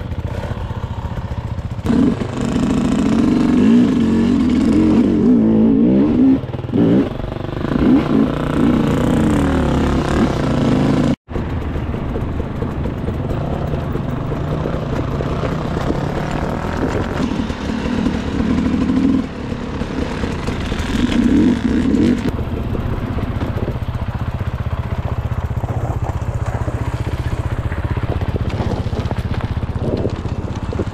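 Dirt bike engines revving, rising and falling in pitch. There is an abrupt cut about eleven seconds in; after it the engine drone is steadier, with two swells of revving.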